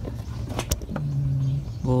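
A single sharp click about two-thirds of a second in, then a man briefly humming before he speaks.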